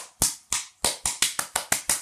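A hand slapping a blob of Play-Doh flat against the ground: about ten quick, sharp smacks that come faster toward the end.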